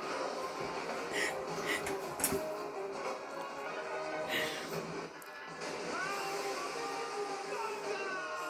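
Television playing in the room: background music with some voices.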